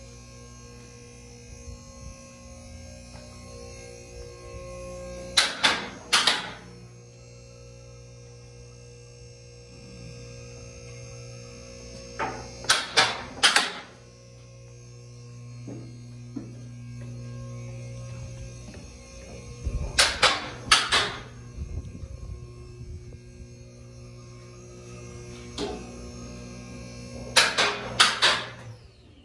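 The electric hydraulic power unit of a Lift King four-post lift hums steadily as it pumps the lift up on a full priming stroke. Loud metal clunks come in close pairs about every seven seconds as the lift's locks drop into place one by one rather than together, because the lock linkage is not yet adjusted.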